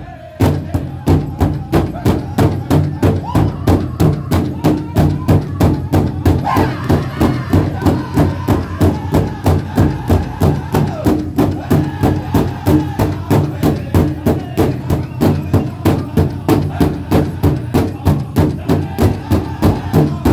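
Powwow drum group singing a chicken dance song, with several drummers striking one large shared powwow drum together in a steady, even beat under the voices.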